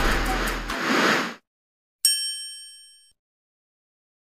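The tail of intro music with a rising swell of noise cuts off about a second and a half in. After a short pause a single bright ding sound effect rings out and fades over about a second.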